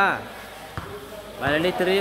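A man's voice talking over a few short, dull thuds of a volleyball being struck in a large hall.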